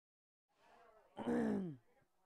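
Dead silence at first, then a faint voice and, about a second in, a short, louder drawn-out vocal sound that falls steadily in pitch.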